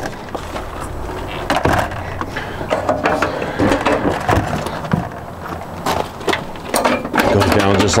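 Fold-up metal entry steps on a travel trailer being unfolded and lowered into place: a string of metal clicks, rattles and knocks.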